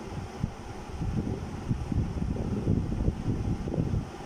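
Cloth being rubbed across a whiteboard to erase it: an uneven, low scrubbing noise.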